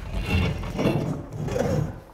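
An old hand pump worked by its handle, giving two long, dry rubbing strokes.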